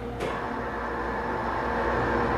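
Aircraft carrier arresting gear machinery in its below-deck engine room: a sudden clank a moment in, then a steady mechanical rumble with a hum that grows steadily louder as the gear runs.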